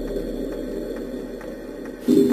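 Low, sustained background music that slowly fades.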